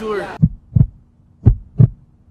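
Heartbeat sound effect: two double thumps (lub-dub), about a second apart, low and deep.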